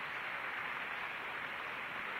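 A steady, even noise with no voice or tone in it.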